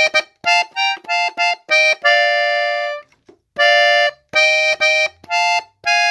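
A three-row diatonic button accordion tuned in FA plays a phrase in B-flat on the treble side. It plays a string of short detached chords, holds one longer chord about two seconds in, pauses briefly around three seconds, then goes on with more held and short chords.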